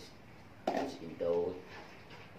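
Speech only: a voice talking in two short phrases in the second half.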